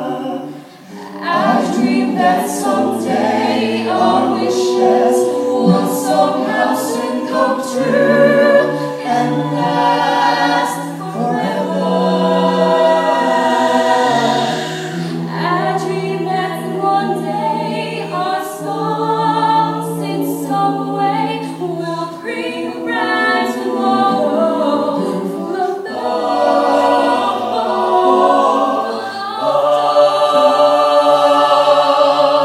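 Mixed-voice a cappella ensemble singing in close harmony into microphones, with a low sung bass line held under the upper parts. The sound dips briefly about a second in, then the voices carry on.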